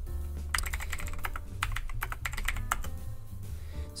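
Typing on a computer keyboard: a quick run of about fifteen keystrokes as a short search query is entered.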